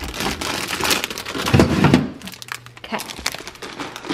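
Thin plastic produce bag of broccoli florets crinkling and rustling as it is handled and lifted out of a fridge drawer, loudest about halfway through.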